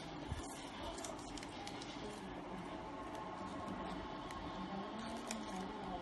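A sheet of paper being folded and creased by hand on a board: soft rustles and small scattered clicks over a steady background hiss.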